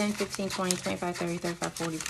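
Paper banknotes being flipped off a stack one at a time in a quick riffle, under rapid muttered counting of about six syllables a second.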